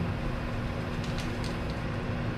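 Sugar being spooned from a bag into a pot: a few faint light ticks and rustles a little after a second in, over a steady air-conditioner hum.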